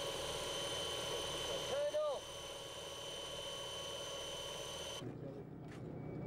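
Steady aircraft engine drone with a constant high whine, a short exclaimed voice about two seconds in; the drone cuts off abruptly near the end.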